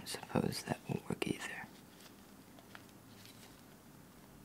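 A person's voice for about the first second and a half, words not made out, then faint clicks and rustling as latex-gloved hands turn the blocks of a wooden snake cube puzzle.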